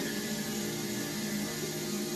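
A steady hum with hiss and no speech, fainter than the talk around it.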